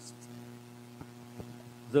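Steady electrical mains hum from the church's microphone and amplifier system, with two small clicks about a second in and shortly after.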